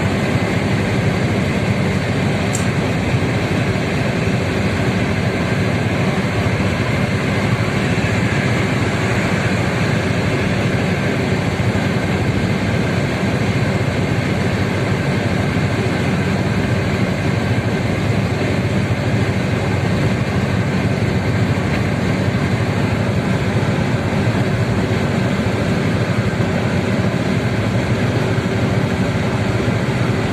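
Car cabin noise while cruising on a highway: a steady, unchanging rumble of tyres on the road and engine.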